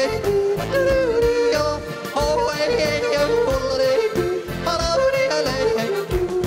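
A man yodeling into a microphone, his voice flipping up and down between notes, over folk backing music with a steady beat.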